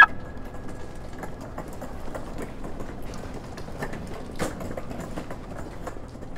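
A sharp click with a brief ringing tone at the start. Then footsteps and wheelchair wheels rolling over a concrete garage floor: irregular taps over a steady hum, with one louder tap about four and a half seconds in.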